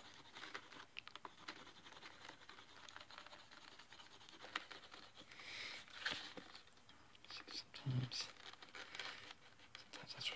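Faint scratching, rubbing and small clicks of a wooden hand tool and fingers working the leather toe plug of a holster, pressing it flush and shaping it slightly concave. The noise comes and goes in short scuffs, a little louder about halfway through and near the end.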